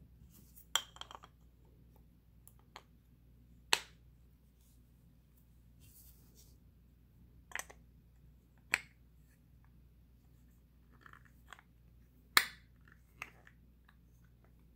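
Wooden grip panels being handled and pressed onto a Colt Python revolver's stainless steel frame: irregular sharp clicks and knocks, spaced a second or more apart, with faint scraping between.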